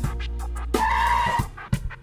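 Background score music with steady bass notes; a little under a second in, a brief high screech cuts across it for about half a second, and the music drops away near the end.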